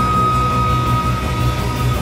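A live band with electric guitars, bass and drums playing an instrumental passage, with one long held high note that stops near the end.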